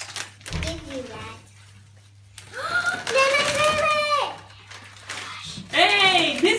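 A child's voice: a short utterance about half a second in, then a long drawn-out vocal sound lasting well over a second that holds its pitch and then drops away.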